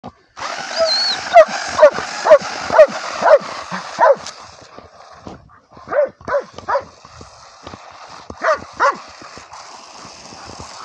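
A German shepherd barking excitedly in quick runs: about six barks at roughly two a second, then three more, then two near the end.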